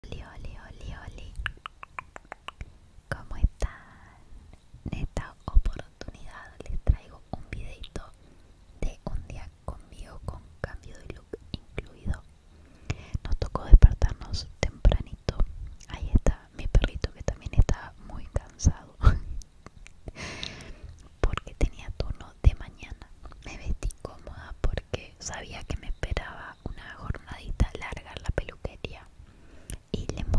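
A woman whispering close to the microphone, with many short, sharp clicks all through it.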